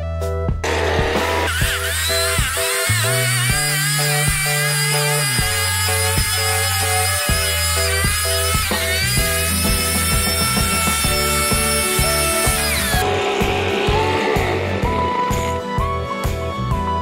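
Handheld leaf blower spinning up with a rising whine about half a second in, running with its pitch shifting, then winding down about three seconds before the end. Background music with a steady beat plays under it throughout.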